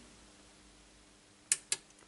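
Near-quiet room tone with a faint steady low hum, broken about a second and a half in by two short, sharp clicks a fifth of a second apart.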